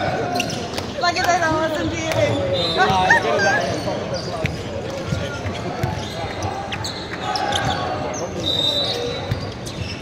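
Players' voices and calls in a large indoor sports hall, with the thuds of a ball bouncing on the wooden court floor between rallies of a volleyball match.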